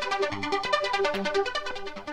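Arpeggiated synthesizer line, a rapid run of short, even notes, played through a phaser effect from the Ohmboyz delay plugin.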